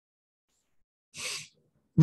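Near silence, then about a second in a man draws one short, sharp breath in.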